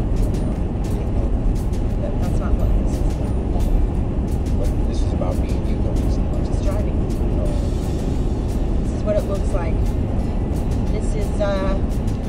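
Car cabin noise at highway speed: a steady, deep rumble of tyres and engine, with frequent small irregular clicks over it.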